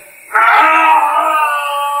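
A man's long, loud scream of pain ("ah!"), starting about a third of a second in and held at a steady pitch.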